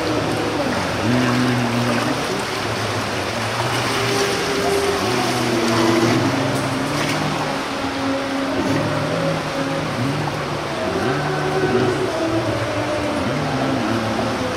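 Voices singing a slow melody in long held notes, likely the onlookers singing a hymn, over a steady hiss of pool water.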